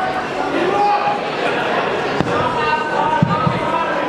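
Crowd talking and calling out in a large hall, with two sharp thuds about a second apart, a little past halfway: boxing gloves landing punches.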